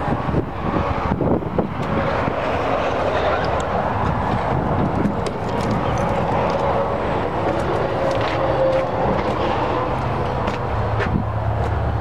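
Kenworth T800's Cat C-15 diesel engine idling steadily with wind on the microphone, its low hum growing stronger near the end as the engine is approached. A few light knocks and clicks from the hood being handled.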